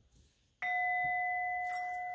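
Metal singing bowl struck once with a wooden mallet about half a second in, ringing on with a steady two-tone hum that slowly fades.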